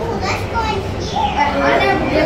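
Overlapping chatter of a crowd of people, children's voices among them, with a low steady hum underneath.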